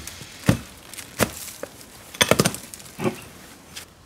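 A long-handled digging tool chopping into soil and old root and frond debris at the base of a cycad, clearing the dirt away. There are several short sharp strikes, roughly one a second, with two close together in the middle.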